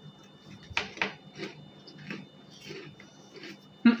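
Chewing and crunching of crispy, airy puffed snacks, a handful of soft irregular crunches spread over a few seconds.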